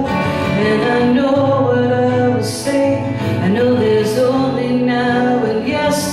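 A woman singing slow, long-held notes live into a microphone, accompanying herself on a strummed acoustic guitar.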